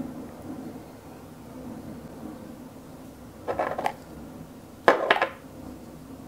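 Two short clattering clicks of small hard objects about a second apart, the second louder: makeup brushes and product cases being handled and set down.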